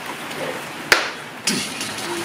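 Small cardboard box being handled and opened, with a sharp tap about a second in and another about half a second later, over a steady hiss of rain on the roof.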